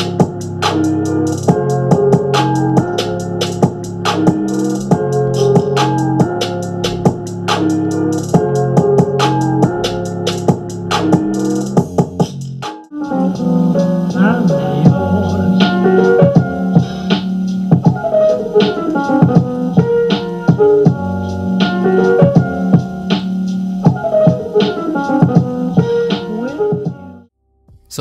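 Music played through the Dell U3818DW monitor's built-in dual 9-watt speakers at 70% volume and picked up by a microphone: a trap beat with a steady drum pattern. It breaks off about halfway through, a second beat-driven track follows, and it stops shortly before the end.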